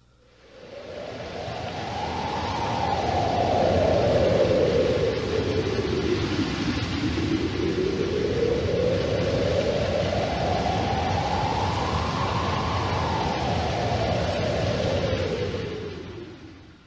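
Film sound effect of a violent wind storm: a loud rush of noise with a deep rumble underneath, its howl rising and falling in pitch twice, swelling in about a second in and fading at the end.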